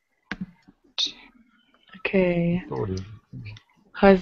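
A few computer keyboard clicks as a short word is typed, with a brief voiced sound about halfway through, held then falling in pitch.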